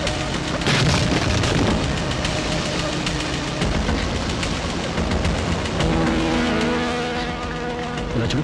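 Loud continuous rumbling, rushing noise from a film action scene's sound effects, as of water and rock in a flooding cave, with a few steady tones coming in about six seconds in.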